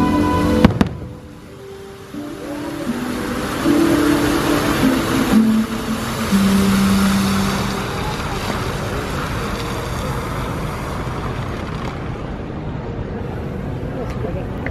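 Fireworks show music, cut by a single sharp firework bang about a second in. Long held low notes of music follow, then a steady, noisier rushing sound through the second half.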